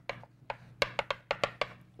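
Chalk writing on a chalkboard: an irregular run of sharp taps and clicks as the chalk strikes the board with each letter, thickest in the second half.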